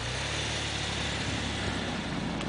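A Nissan Pathfinder SUV's engine running steadily as it drives slowly past through deep snow, over a steady hiss of tyres in the snow.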